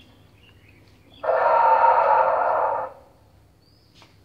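Dinosaur roar sound effect from the T-rex costume's built-in speaker: one harsh, loud call of under two seconds that starts and cuts off abruptly about a second in.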